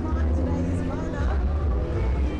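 Nissan GT-R twin-turbo V6 engines rumbling low as the cars roll slowly past at parade pace, one close by, with voices talking in the background.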